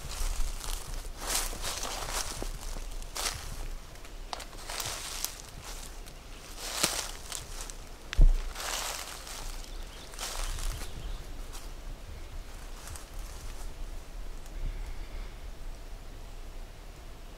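Footsteps through dry leaf litter, with brush rustling as it is pushed past, in an uneven walking rhythm. One heavier thump comes about eight seconds in.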